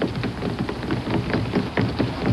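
Water splashing and sloshing in quick, irregular spatters.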